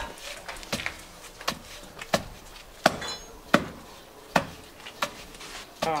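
Wooden pestle pounding peanuts in a tall wooden mortar (pilão), eight strokes at a steady pace of about one every three quarters of a second, each a short knock. The peanuts are being crushed down so that no whole pieces are left.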